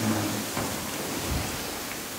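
A steady, even hiss in a pause between a man's spoken phrases, with no other distinct sound.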